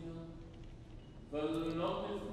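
A man chanting a liturgical melody: a held note fades just after the start, then after a short pause a new sung phrase begins about a second and a half in.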